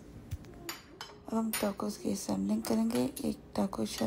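Stainless metal tongs clinking against a ceramic serving bowl and plates several times in the first second, followed by a woman's voice talking.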